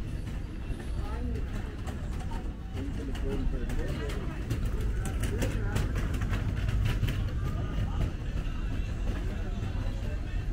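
Ambience of a busy pedestrian street: indistinct voices of passers-by over a steady low rumble, with scattered clicks.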